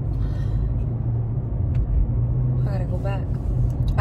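Steady low rumble of a car driving, heard inside the cabin. A short snatch of a woman's voice comes near the end.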